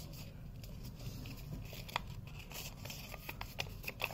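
Faint rustling and crinkling of a sheet of paper being folded and creased by hand, with a few soft crackles and one sharper tick about two seconds in.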